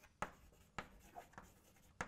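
Chalk on a blackboard while writing: four faint, short taps and scratches as the letters are formed.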